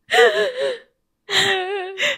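A woman's voice giving two drawn-out, wavering high-pitched cries: shocked, amused reactions rather than words. There is a short pause between them.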